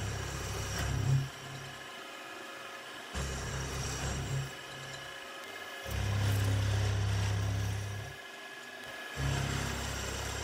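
Milling machine with an end mill cutting an aluminium block. A steady spindle whine runs throughout, and a heavier cutting sound comes and goes in passes of one to two seconds, loudest about six to eight seconds in.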